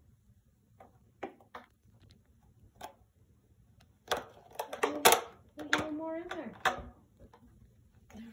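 A few faint taps and knocks of a plastic treat container being nosed around on a rug by a cat. About four seconds in, a person's voice talks for a few seconds.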